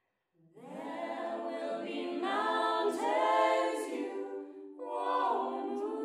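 Mixed a cappella choir singing held chords. The voices come in after a brief silence about half a second in and swell, then start a new phrase about five seconds in.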